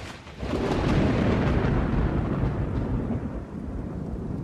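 Thunderstorm sound effect: a low, rolling rumble of thunder over rain, which builds within about half a second after a short click at the start and then holds steady.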